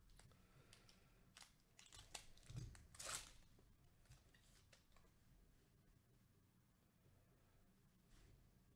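Faint crinkling and tearing of a trading card pack wrapper being opened by hand, with a few light clicks and a soft thump. The loudest crackle comes about three seconds in, then only faint handling of the cards.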